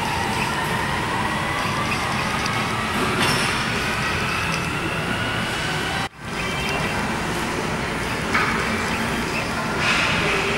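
Steady gym background noise with a faint whine rising slowly in pitch. The sound drops out for a moment about six seconds in.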